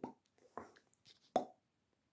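Three short, soft pops close to the microphone, the loudest one near the end.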